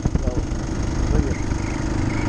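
Motorcycle engine running steadily while riding at low speed, with wind rumbling on the microphone.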